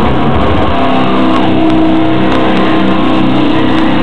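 Live metal band at full volume: the drums drop out about a second in and a distorted electric guitar chord is held, ringing on steadily. The recording is loud and harsh, with the highs cut off.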